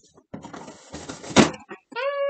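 A blade slicing through packing tape and cardboard on a shipping box: a scratchy rasp with one sharp loud snap about one and a half seconds in.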